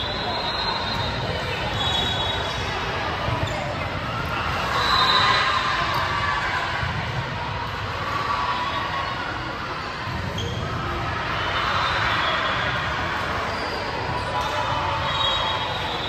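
Indoor gymnasium hubbub with voices, short high squeaks of sneakers on the hardwood court, and ball bounces.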